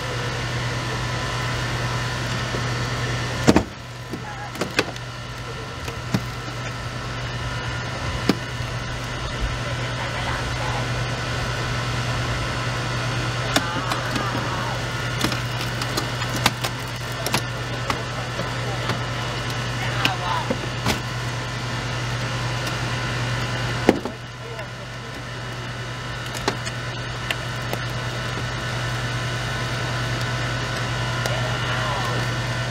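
Power unit of hydraulic rescue tools (spreaders and cutters, the jaws of life) running steadily while a crashed minivan's door is cut and spread, with repeated cracks and snaps of metal and glass giving way. Two loud snaps, one a few seconds in and one about four-fifths of the way through, are each followed by a brief drop in level.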